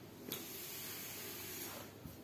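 Cotton T-shirt fabric rustling as a hand lifts and flips it over on a table: a sharp brush about a third of a second in, then a steady rustle that stops shortly before the end.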